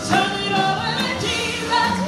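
A woman singing a gospel song into a microphone over instrumental accompaniment, with sung notes held and sliding between pitches.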